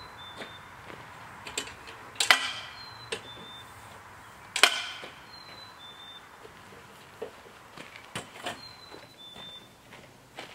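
Folding metal miter saw stand being opened out: two sharp metallic clanks that ring on, about two seconds apart, with lighter clicks and rattles of the stand's frame and legs between and after.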